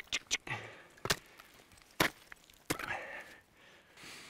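Ice tools and crampons striking hard waterfall ice: a run of sharp chops about a second apart, with a few quicker small taps at the start.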